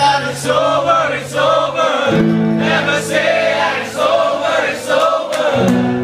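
Live acoustic song: a man sings over acoustic guitar chords, the chord changing about two seconds in and again near the end.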